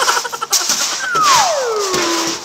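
A falling-whistle comedy sound effect: a clear whistle tone slides smoothly downward for about a second, starting about a second in, over a steady hiss that begins about half a second in.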